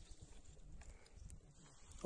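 Near silence: faint outdoor background noise with a few soft ticks.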